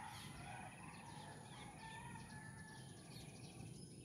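Faint rural outdoor ambience: small birds chirping in short repeated trills, with faint distant rooster calls.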